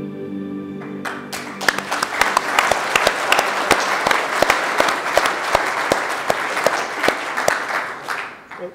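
Soft instrumental music ends about a second in, then an audience applauds steadily.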